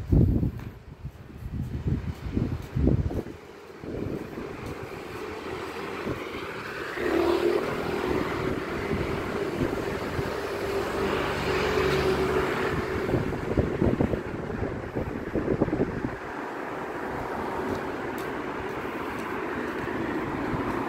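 A car driving close past, its engine hum and tyre noise swelling over several seconds and then fading away. There are low gusts of wind on the microphone in the first few seconds.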